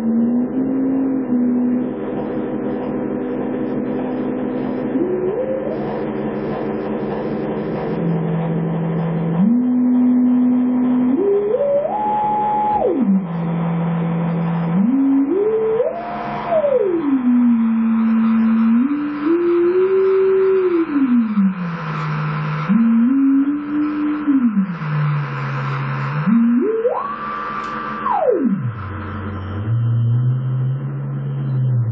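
Live electronic music: a single electronic tone that holds notes and slides smoothly up and down between them, over a low steady drone. It climbs highest, to a high held note, near the end, then swoops down low.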